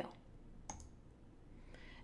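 Quiet room tone with one short, faint click about two-thirds of a second in.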